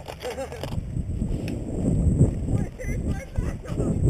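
Wind rumbling unevenly on a GoPro's microphone while the wearer moves about, with faint voices in the distance.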